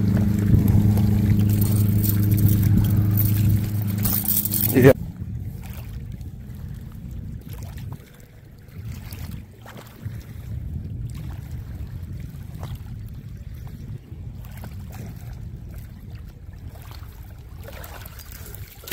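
A steady motor hum with several pitched tones for the first five seconds, cutting off suddenly. After that come quieter wind and water noise, with scattered faint clicks.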